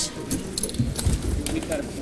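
Low background murmur of voices in a hearing room, with faint small clinks and rustling handling noises.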